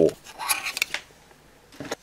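Pencil rubbing and scraping in a small pencil sharpener as it is handled, with a few light clicks, for about a second.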